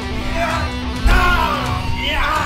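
Electric guitar playing with sliding, bending notes, and a heavy low thump about a second in.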